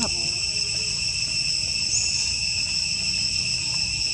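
Steady forest insect chorus: several unbroken high-pitched tones held level throughout, with a short faint chirp about two seconds in.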